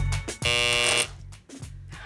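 A harsh electronic buzzer sound effect lasting about half a second, over background music with a beat.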